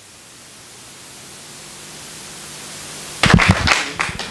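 Steady microphone hiss that slowly grows louder, then a cluster of loud knocks and thumps near the end from a handheld microphone being handled.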